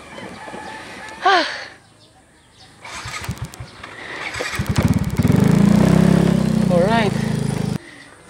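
Yamaha motor scooter's engine being started: a few seconds of irregular cranking, then it catches and runs steadily and loudly until it cuts off abruptly just before the end. A rooster crows about a second in and again near the end.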